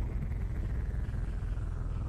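Steady low hum with a faint hiss: room and recording background noise, with no distinct event.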